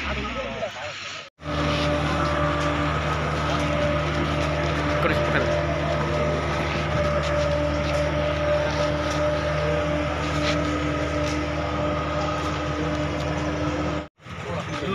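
A vehicle engine idling with a steady, even hum. It starts after a short break about a second in.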